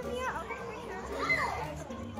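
Children's voices in the audience, calling out in high, rising-and-falling cries twice, over the murmur of crowd chatter.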